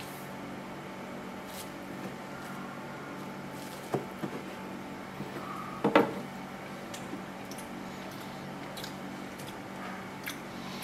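Kitchen knife cutting through a baked pastry crust and knocking on a plastic cutting board: a few short knocks and scrapes, the sharpest about four seconds in and the loudest about six seconds in, over a steady low hum.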